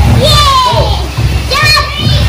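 A young girl squealing and shouting in play, with no words, her high voice sliding down in pitch about half a second in and rising to a sharp squeal near the end.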